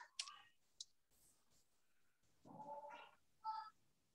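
Near silence over a video call, with a click just after the start and a few faint, short voice sounds in the second half.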